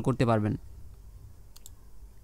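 Two faint, quick clicks close together about one and a half seconds in, from a computer mouse button pressing the on-screen add-note button. A man's voice is heard for the first half second.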